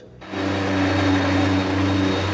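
A power tool running steadily against car bodywork, a loud hum with a hiss over it that starts suddenly just after the beginning.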